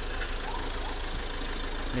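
Steady low hum under even background noise, with a faint click just after the start.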